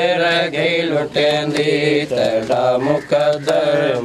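A man's voice reciting a noha, the Muharram mourning lament, in a sustained melodic chant, with sharp rhythmic slaps about twice a second typical of matam chest-beating.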